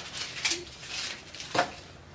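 Plastic wrappers and backing of Fruit by the Foot rolls rustling and crinkling as they are peeled and handled, with two sharper crackles about half a second in and near the end.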